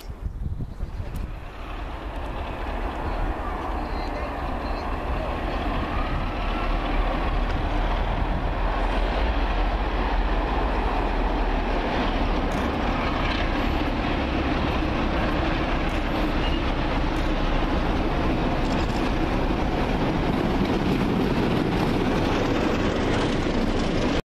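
Class 47 diesel locomotive working hard as it pulls the train out, a heavy engine rumble that builds over the first several seconds and then holds steady.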